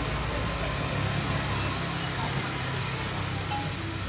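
Steady background hum and hiss of a busy street-side noodle stall, with no single sound standing out.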